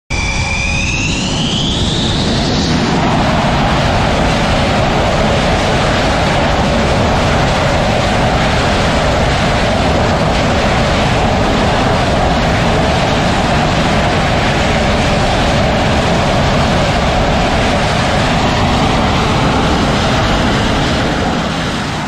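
Jet engines of F/A-18-family fighters running loud and steady, with a high whine that rises in pitch during the first couple of seconds and then fades into the engine noise.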